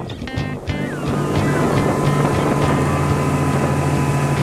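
Strummed guitar background music. About a second in, the steady sound of a motorboat engine and rushing water comes up and gets louder than the music.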